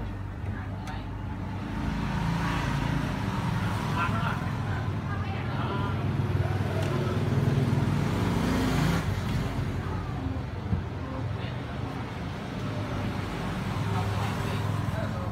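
A steady low rumble like road traffic, with indistinct voices in the background.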